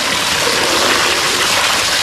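A steady stream of water pouring onto a plastic toy dump truck and splashing into shallow water, rinsing the sand off it.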